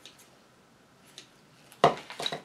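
A few faint clicks, then one sharp knock or clatter near the end, from hard objects being handled on a work table.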